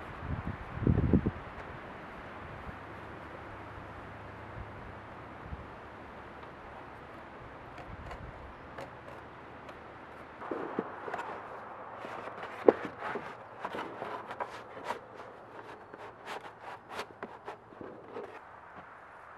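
Stiff black roofing felt being handled and trimmed with a utility knife. There is a crinkle about a second in. From about ten seconds in comes a run of sharp crackles and clicks, with one loud click in the middle of it.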